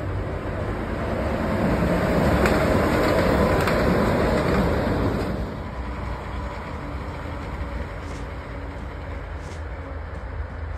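Walt Disney World monorail train passing on its elevated concrete beamway: its running noise swells over the first couple of seconds, holds, and fades about five seconds in. A steady low rumble remains after it.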